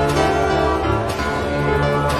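Electronic keyboard playing worship music: held, slowly changing chords.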